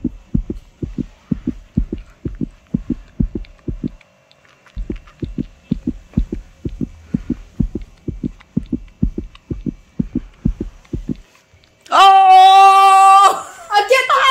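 Heartbeat sound effect: low thumps about three a second, with a short break about four seconds in, stopping a little after eleven seconds. Near the end a loud, steady buzzer-like tone sounds for about a second and a half.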